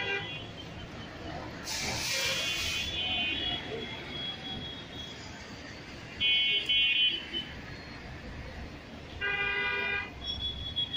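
Vehicle horns honking in passing street traffic over a steady background noise. There is a toot about two seconds in, with a brief hiss at its start. Another comes about six seconds in and is the loudest. A fuller, lower honk sounds near the end.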